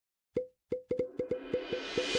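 A run of about ten short, same-pitched cartoon-style pop sound effects. They start about a third of a second in and come closer and closer together, over a faint rising hiss.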